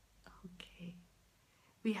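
A woman's voice, faint and whispered under her breath in the first second, then a pause, then normal speech starting near the end.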